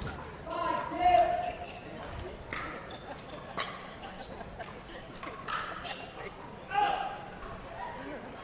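Pickleball paddles hitting a hard plastic ball on a serve and rally: about three sharp pops, roughly a second apart.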